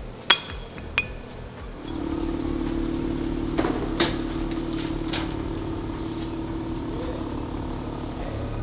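Two light metallic clinks from aluminium track-stand parts being fitted together, then a steady mechanical hum from the flatbed tow truck unloading a car, with a few faint ticks over it.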